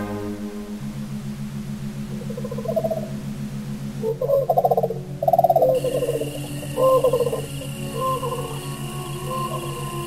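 Ambient music: a steady pulsing low drone, with a high steady tone joining a little past the middle. Over it comes a run of short warbling calls that rise and fall in pitch, loudest from about four to seven seconds in.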